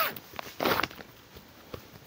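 Clear plastic saree packaging being handled: one short rustle about two-thirds of a second in, then a few light clicks.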